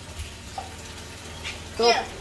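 Quiet background noise with no clear event, then a short spoken word near the end.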